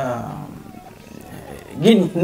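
A man's wordless vocal calls: a drawn-out call that falls in pitch and fades over the first second, then a loud new call that rises in pitch near the end.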